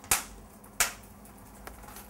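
A pause in speech: quiet room tone broken by two brief soft noises about two thirds of a second apart, the first the louder.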